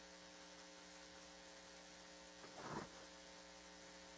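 Near silence: a steady low electrical hum in the broadcast audio, with a short faint noise about two and a half seconds in.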